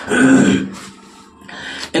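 A man clearing his throat once, a short voiced rasp, followed by a soft intake of breath.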